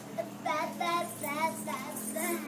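A toddler's high-pitched, sing-song vocalizing: a string of short syllables that waver in pitch.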